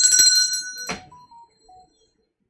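A bell-like ringing of several high steady tones that cuts off sharply with a click about a second in, followed by a few short, faint beeps stepping down in pitch.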